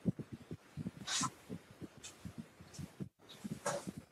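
A person's breathing with two sharp breaths or sniffs, one about a second in and one near the end, over soft irregular low thuds.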